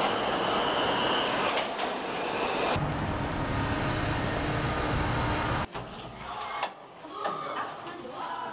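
Subway train pulling into an underground station: loud rushing noise with a high steady tone for the first second and a half, then a deep rumble. It cuts off abruptly about two-thirds of the way through, leaving quieter background.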